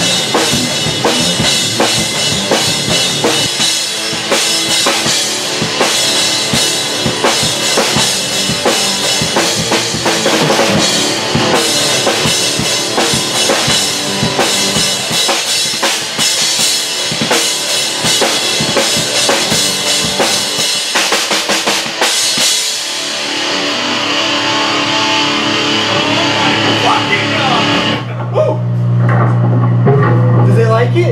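Rock band rehearsing: a drum kit and electric guitars play a song together, with a fast run of kick, snare and cymbal hits. About three-quarters of the way through the drums stop and the guitars ring on. Near the end a steady low tone takes over.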